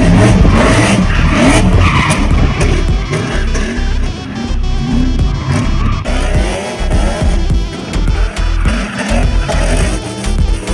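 A drift car's engine revving up and down with tyres squealing as it slides sideways, over background music.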